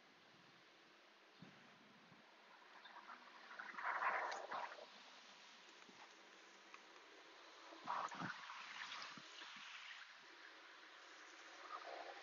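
Faint handling sounds of hands working with craft materials, with two brief, louder rustles about four and eight seconds in.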